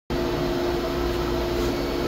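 Steady hum and whoosh of workshop machinery running, even and unchanging throughout.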